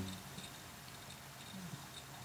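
Quiet room tone with no distinct sound.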